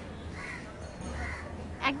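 Two short bird calls less than a second apart, over a low, steady background rumble.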